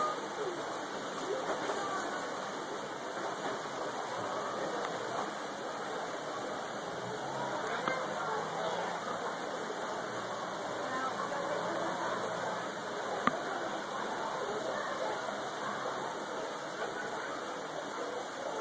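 Steady rush of water running over rocks in a small water feature, with faint voices behind it and a single sharp click near the end.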